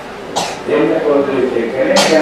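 A man speaking into a handheld microphone, with a short breathy burst about half a second in.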